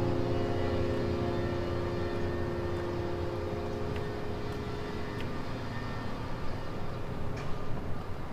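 Background score: a low sustained chord, struck just before, fading slowly, with a few faint clicks in the second half.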